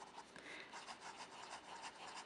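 Faint scratch and rub of an Aurora Optima fountain pen's 14K gold nib on paper as it writes a word and then a row of looping strokes, in quick irregular strokes. The nib is buttery smooth, with little tooth.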